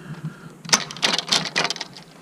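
Hard plastic clicks and rattles from the Rod-Runner Pro rod transporter's rod-holder arms being handled and fitted back onto the hub. A quick run of sharp clicks starts about a third of the way in.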